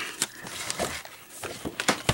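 Cardstock paper being handled and pressed into place: several short rustles and taps.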